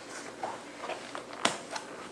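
A small cardboard shipping box being handled, with faint rustling and a sharp knock about one and a half seconds in as it is set down on the table.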